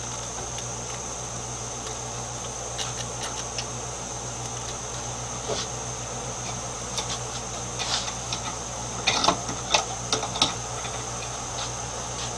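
A steady machine-like hum with a thin high steady tone. Over it come scattered light clicks and taps of small objects being handled, growing more frequent in the second half, with the loudest cluster a few seconds before the end.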